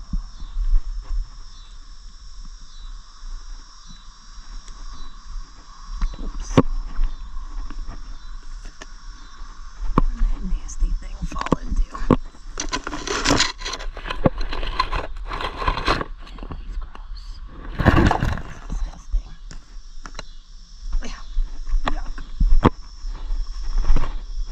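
Tomato foliage rustling and pruning shears clicking as tomato vines are trimmed, with several sharp snips and louder bursts of leaf rustle. Behind it, a steady insect chorus drones.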